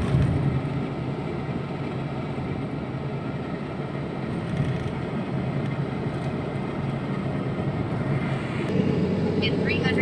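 Steady road and engine noise inside a moving car's cabin, a low rumble. Near the end a navigation voice starts a turn instruction.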